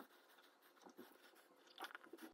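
Near silence, with a few faint small clicks as a plastic LED teeth-whitening mouthpiece is handled and fitted into the mouth.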